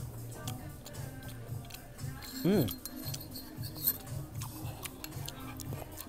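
Background music with a low, repeating bass line, with a few light clinks of a spoon against a small dish.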